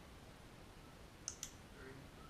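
Two sharp, high clicks in quick succession, about a sixth of a second apart, a little over a second in, against near-silent room tone.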